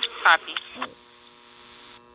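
A steady electrical hum made of several steady tones, with a word of a woman's speech over it in the first second.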